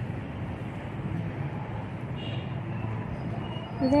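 Steady low background rumble, like distant road traffic, with no clear events in it.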